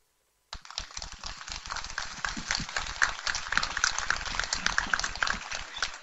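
A moment of dead silence, then an audience applauding, a dense steady patter of claps that thins slightly near the end.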